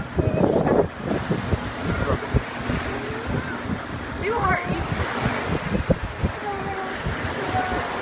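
Sea surf washing on a beach, with wind buffeting the microphone in gusty low rumbles. Faint voices come in at times.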